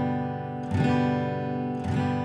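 Acoustic guitar strumming a G major chord twice, about a second apart, each strum left to ring.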